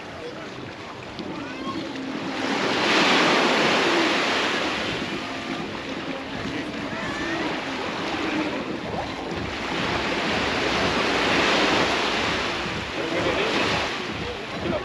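Sea waves breaking and washing up a beach, the surf swelling loud twice, with faint voices of people in the background.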